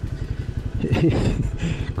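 Royal Enfield Himalayan 450's single-cylinder engine running as the motorcycle is ridden, a steady rapid train of low firing pulses.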